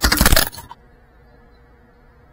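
GEPRC Cinelog 35 cinewoop FPV drone crashing into the ground: a quick burst of clattering impacts in the first half second as it tumbles. Then the motors stop and only a faint steady hum is left as it lies upside down.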